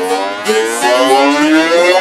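A siren-like synth sweep in a G-house track, rising steadily in pitch with no bass or drums under it. The kick and bass come back in just as it ends.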